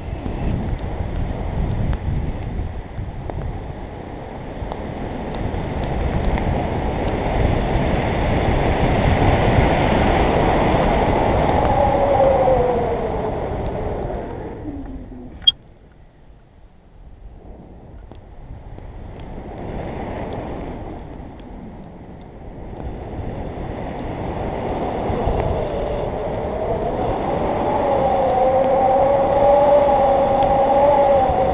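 Airflow rushing over the microphone of a camera flying on a tandem paraglider, swelling and fading as the glider turns. A wavering whistle rides on it: it falls away about halfway, after which comes a single sharp click and a brief lull, and it returns near the end.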